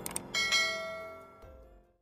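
Two quick clicks, then a bright, multi-toned bell chime that is struck, rings again a moment later and fades out over about a second and a half: the click-and-bell sound effect of a subscribe-button animation.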